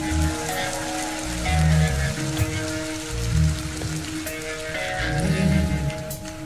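Live rock band playing: electric guitar holding long sustained notes over a pulsing bass line and drums.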